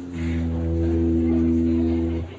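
The "talking tie", a necktie fitted with a small electronic keyboard synthesizer, sounding a steady, held low organ-like chord, with a brief break just at the start.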